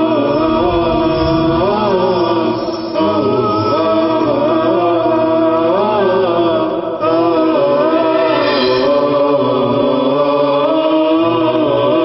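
Chanted vocal theme music, a slow melody sung in long held phrases, with brief breaks about three and about seven seconds in.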